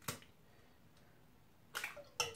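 An egg tapped against the edge of a pan: one sharp tap at the start, then a brief crackle of clicks near the end as the shell cracks.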